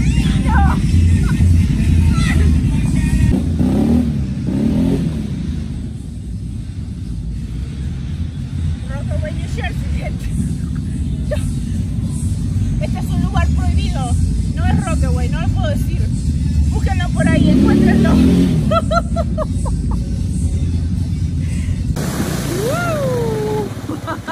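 Loud music and voices, with off-road motorcycle engines running underneath; an engine revs up and down about four seconds in and again near eighteen seconds.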